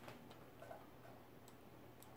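Near silence: room tone with a low hum and a few faint, scattered clicks from a computer mouse while the on-screen map is zoomed in.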